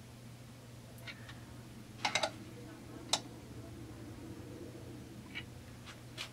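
A few faint clicks and ticks from a degree wheel being turned by hand on a chainsaw crankshaft against a piston stop: a single click, then a quick cluster of three about two seconds in, another a second later. A low steady hum sits under them.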